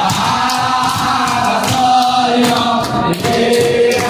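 A large group of young men singing a Hasidic-style song loudly together in unison, with hand-clapping along to the beat.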